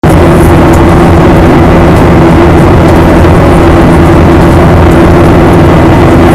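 Airliner cabin noise in flight: the jet engines and airflow make a loud, steady drone with a constant low hum.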